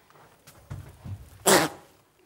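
A short, sharp, loud vocal burst from a person, about one and a half seconds in, after some low, quiet voice sounds.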